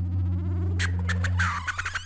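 Electronic music from a TV show's title sting: a held low synth note, joined about a second in by quick high flicks and sweeps.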